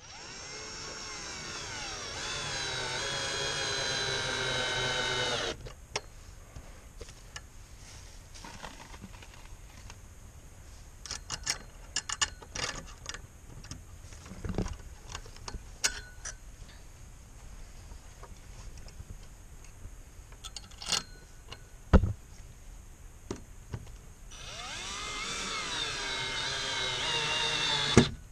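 Cordless drill driving screws through a metal strap bracket into a wooden fence rail: two runs of motor whine, one through the first five seconds or so and one over the last three or four, each climbing in pitch and bending as the screw goes in. Between the runs there are scattered light clicks and knocks, and one sharp knock about 22 seconds in.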